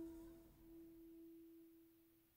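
The final note of the song dying away: a single faint piano tone ringing on and fading out, with a slight wavering in level as it decays.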